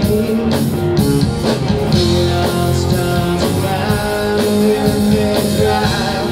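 Live rock band playing a country-rock song on electric guitars, bass and drum kit, with a steady beat throughout.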